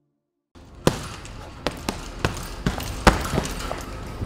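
Punches landing on a heavy bag: about eight sharp thuds at an uneven pace, the loudest about three seconds in, over a steady low background noise. The first half second is silent.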